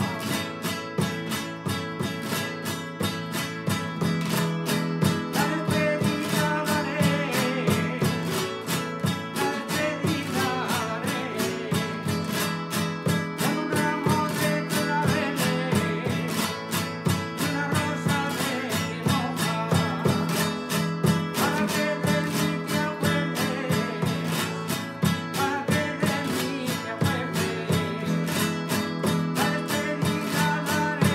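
Traditional Spanish guitar strummed quickly and steadily in a jota accompaniment, played 'por la estudiantina', in the A major position with standard tuning. An older man's voice sings over it at intervals.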